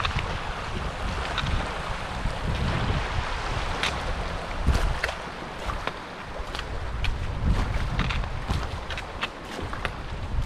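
Shallow creek running over stones in a steady wash, with wind buffeting the microphone in uneven low gusts. Irregular crunching footsteps on gravel, about one or two a second.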